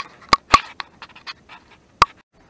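A series of sharp clicks and knocks. The two loudest come about half a second in, followed by fainter ticks and one more sharp click at the end.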